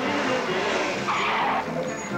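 Background music with a short tyre screech, like a car skidding, about a second in, from the open vintage car.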